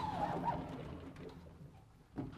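Sliding blackboard panels being pushed along their tracks: a brief squeal as they start to move, then a rolling rumble that fades over about two seconds.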